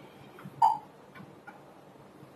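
A few light taps of a pen on an interactive display's screen, the loudest about half a second in with a brief ring, then fainter ticks.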